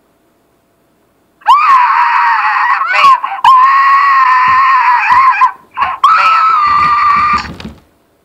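Loud, high-pitched screaming in three long held screams. The first begins about a second and a half in and the last breaks off shortly before the end.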